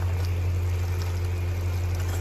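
A steady low hum under the faint simmering of onion-tomato masala cooking in an aluminium kadhai on a gas stove.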